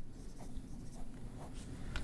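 Dry-erase marker drawing a small box and arrow on a whiteboard: faint rubbing strokes.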